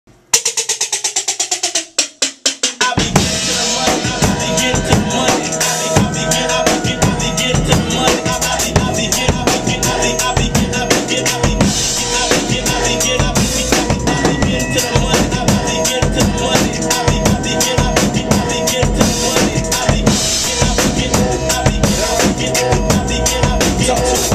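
Acoustic drum kit played along with a hip-hop backing track's instrumental intro. A quick run of evenly spaced strokes opens, a few separate hits follow, then about three seconds in the full beat comes in and runs steadily, kick, snare and cymbals over held pitched backing sounds.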